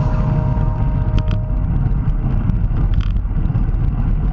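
Low, steady rumble of wind and road noise on a bicycle-mounted camera riding in a group, with the last notes of a music track dying away in the first second or so and a couple of faint clicks.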